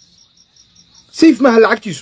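A cricket chirping steadily in quick, even pulses, about six a second, heard plainly in a pause in speech; a man's voice comes in a little past halfway.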